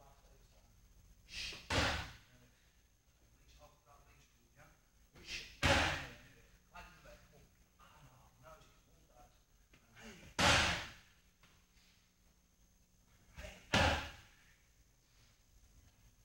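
Strikes landing on Muay Thai pads and a belly pad: four heavy slaps a few seconds apart, each coming just after a lighter hit.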